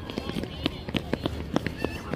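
Children's voices on a school playground: a scatter of short, high-pitched shouts and cries with some chatter.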